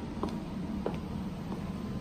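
Steady low background hum of a room, with a few faint, light clicks.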